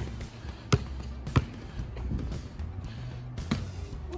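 A basketball bounced on a concrete slab: three sharp bounces in the first second and a half, and a softer one near the end as the shot goes up. Music plays underneath.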